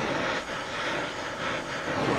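Steady hiss of an oxy-fuel torch flame, the torch being drawn away from a small rusted nut that it has just heated cherry red.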